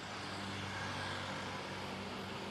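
Scooters and motorcycles passing on a busy street: a steady engine hum over traffic noise.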